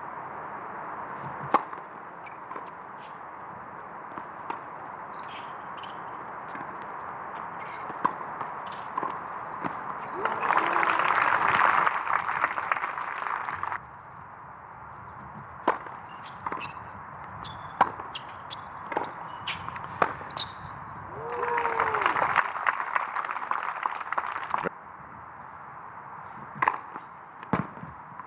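Tennis balls struck by rackets, sharp single pops scattered through, over steady background noise. Two bursts of crowd applause, each with a shout near its start, about ten seconds in and again about twenty-one seconds in, each lasting about three seconds after a point ends.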